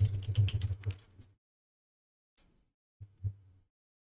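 Computer keyboard typing: a quick run of keystrokes in the first second or so, then two short, fainter bursts of keys in the second half.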